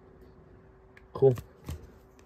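A voice says "That's cool" about a second in, with a few faint clicks and rustles of trading cards in plastic sleeves being handled, over a faint steady hum.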